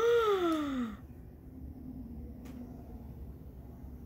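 A woman's drawn-out vocal gasp of shock, a falling "ohh" lasting about a second, then quiet room tone with one faint click about midway.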